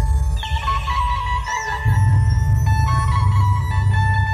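Loud amplified dhumal band music: a sustained electronic lead melody over heavy bass and drum beats. The bass thins out briefly and comes back strongly about two seconds in.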